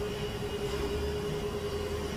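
A steady background hum with one constant mid-pitched drone running through it, like machinery or ventilation.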